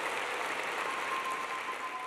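Audience applauding steadily. A faint steady tone joins about a second in.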